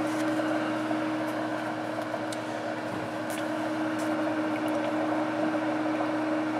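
Haake C1 heating circulator running on its B3 bath: the circulating pump motor gives a steady hum with a constant low tone, as the unit holds the water at temperature.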